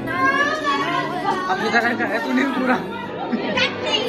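Several voices talking over one another: party chatter in a large room.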